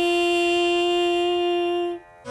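A woman's singing voice holding one long, steady note that closes a sung devotional phrase, cutting off abruptly at the end.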